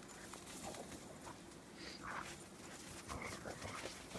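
Two dogs play-wrestling in snow, giving faint short vocal sounds, one about halfway through and a few more near the end.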